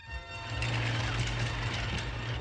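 Cartoon sound effect of a tracked vehicle's heavy rumble. It swells about half a second in, then holds steady.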